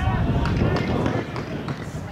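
Distant shouting voices calling out, strongest in the first second, over a steady low rumble of wind on the microphone.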